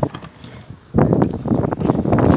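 Kick scooter's wheels rolling on a skate-park ramp: a loud rattling rumble that starts about a second in.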